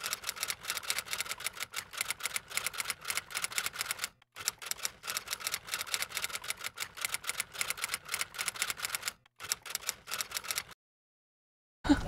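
Typing sound effect: a fast run of key clicks, several a second, with two short breaks, stopping about a second before the end.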